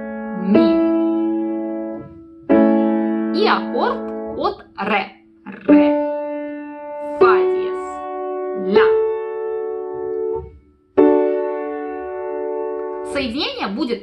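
Piano playing the notes of an A chord slowly, single notes and then the chord struck together, each left to ring for a second or more before the next, with short spoken note names between them.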